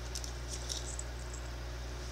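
A steady low hum with a few faint, scattered crinkly ticks from foil-wrapped chocolate being handled.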